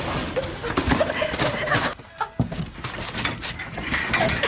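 Phone-recorded voices of people scrambling off the floor, with scattered knocks and thumps as they climb onto store shelves and a railing. The sound breaks off briefly about halfway through.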